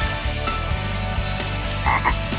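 A cartoon frog croaks once near the end, over background music.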